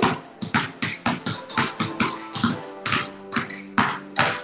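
Two basketballs dribbled hard on a concrete garage floor, a quick, uneven string of bounces from two balls going at once, over background music.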